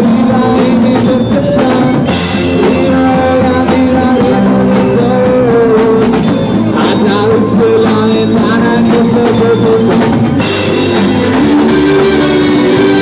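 Live rock band playing an instrumental passage: drum kit keeping a steady beat under electric guitar and bass guitar, with cymbal crashes about two seconds in and again near the end.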